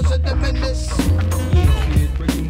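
1990s hip hop beat playing, with a heavy bass line and regular drum hits and no rapping.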